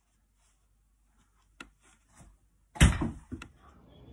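A stretch of silence, then a sharp click and, a little past halfway, one loud thump that dies away quickly, followed by another click.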